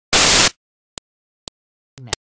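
A loud burst of hissing static lasting under half a second, followed by two short clicks about half a second apart, with dead silence between them.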